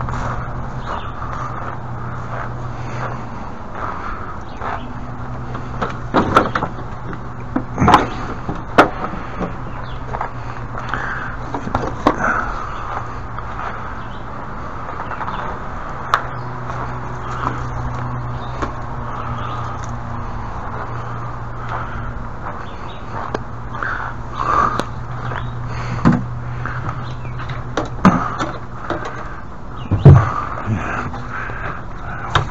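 Scattered knocks, clatters and scrapes of yard equipment being moved about by hand, over a steady low hum.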